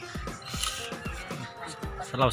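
Background music with held tones and a steady beat.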